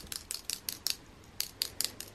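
A kitten pawing at a rubber sticky-hand toy on carpet, with irregular light sharp clicks, about five a second.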